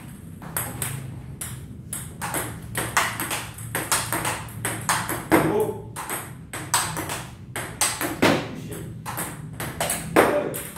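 Table tennis ball being hit in forehand practice: sharp clicks of the celluloid-type ball off the rubber paddle and the table top, in a quick steady rhythm of about two to three hits a second.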